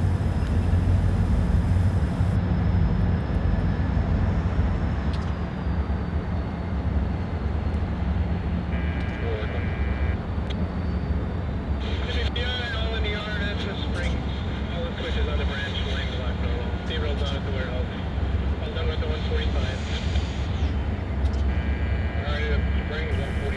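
Diesel locomotives approaching at the head of a freight train, with a steady low engine rumble.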